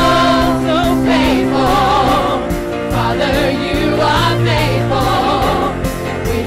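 Live gospel singing by a church praise team and choir with band accompaniment, the voices carried over a steady beat and bass line.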